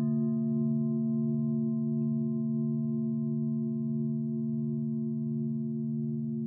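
Large Japanese standing temple bells ringing in several low, overlapping tones. The tones of a bell just struck hang on and fade very slowly, and the lower tones waver in a slow pulse.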